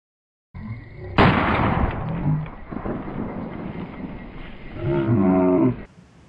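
A sudden loud bang about a second in, followed by men shouting. A long drawn-out yell comes near the end.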